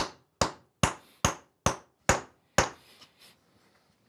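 Hafted round stone hammer striking a bronze axe blank on a stone anvil: seven sharp, ringing blows, about two a second, that stop shortly before the end. The hammering drives up the axe's side flanges.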